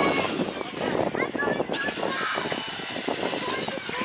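Traxxas Rustler RC truck's motor and drivetrain giving a high whine, steady for a couple of seconds from about halfway in and dropping slightly as it stops, with people talking in the background.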